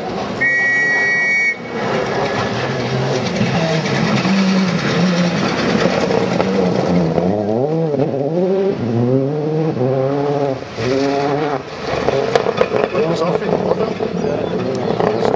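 Rally car engine revving hard through a gravel stage, its pitch rising and falling repeatedly with gear changes and lifts of the throttle, with a few sharp cracks near the end. A brief steady high tone sounds about half a second in.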